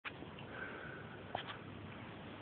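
Quiet room tone with a faint click at the very start and a short sniff about a second and a half in.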